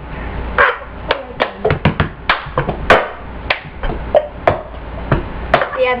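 Cup song routine: hand claps and a plastic cup knocked and slapped on a tabletop, a quick patterned run of sharp taps, about two or three a second.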